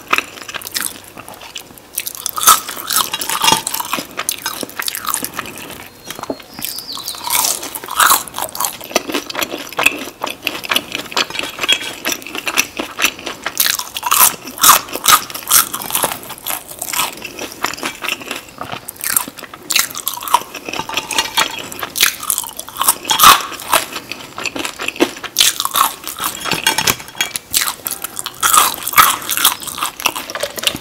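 Close-miked biting and chewing of crisp seasoned french fries dipped in sauce, with a steady run of irregular crunches.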